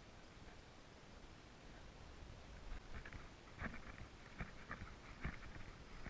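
Faint footsteps and rustling through weeds and brush: a quiet start, then from about halfway a handful of irregular crunches and soft thumps.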